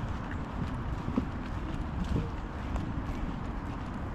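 Footsteps of someone walking across grassy ground, over a steady low rumble.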